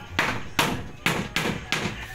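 A hammer striking a plywood sheet in a steady series of sharp blows, about five in two seconds.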